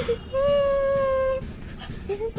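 An Indian Spitz puppy whining: one steady, held whine lasting about a second.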